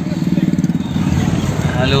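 Car cabin noise while driving: a steady low engine and road rumble with a fast flutter, heard from inside the car.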